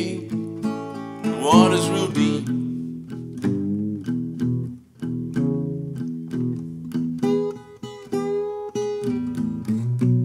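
Solo acoustic guitar playing a 12-bar quick-change shuffle blues: picked treble notes over a thumbed bass line. A sung line closes out in the first couple of seconds, then the guitar carries on alone as an instrumental break, with a few sliding high notes near the end.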